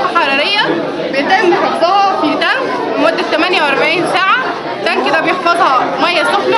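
A woman speaking Arabic in continuous speech, with the chatter of a busy indoor hall behind her.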